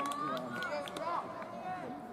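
Voices of junior-high baseball players shouting calls across the field, several overlapping and fading towards the end.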